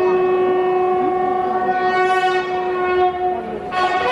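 A long, steady, horn-like held note over the wavering voices of a large crowd. The note breaks off about three and a half seconds in, and a higher note starts just after.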